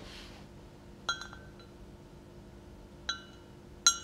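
A paintbrush clinking lightly against the rim of a pot three times, short ringing taps about a second in, near three seconds and just before the end, over a faint steady hum.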